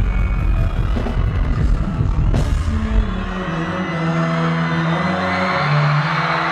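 Loud live hip-hop concert music through a large PA: a heavy bass beat drops out about three seconds in, leaving held low notes that step in pitch, while crowd noise swells toward the end.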